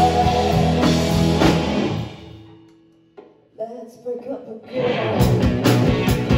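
A live rock band plays: electric guitars, bass and a drum kit, with a singer. About two seconds in the band drops out into a short, nearly quiet break with a few lone notes, and the whole band comes back in about five seconds in.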